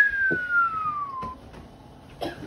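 A person whistling one long note that jumps up and then slides slowly downward, dying away a little past halfway.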